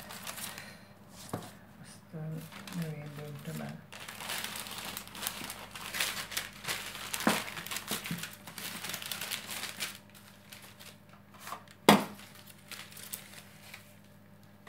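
Baking paper crinkling and rustling as it is folded and pressed around a metal loaf tin, with a single sharp knock near the end.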